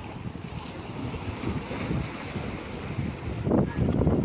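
Wind buffeting the microphone over small waves washing against the shore rocks, growing louder near the end.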